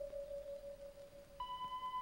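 Soft background music of long held tones: one sustained note fades away, and a new, higher bell-like note with overtones comes in about one and a half seconds in.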